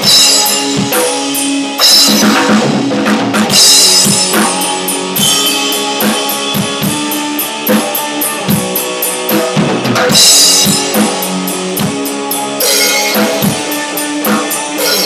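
Instrumental rock played live on a drum kit and one electric guitar, without bass or a second guitar: steady kick and snare strokes under held guitar chords, with cymbal crashes every few seconds.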